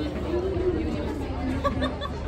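People talking and chatting, over a steady low hum.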